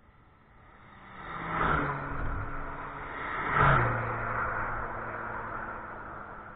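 Two cars passing close by at speed, about two seconds apart, each engine note dropping in pitch as it goes past, then fading away.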